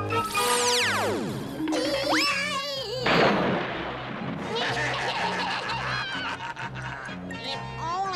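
Cartoon fall sound effects for a small creature dropping down a trap door: a long whistle falling steeply in pitch, a wavering cry, then a noisy crash about three seconds in, over background music.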